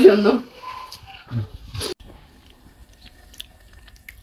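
Faint chewing with small crunches and clicks, close to the microphone: someone eating snacks.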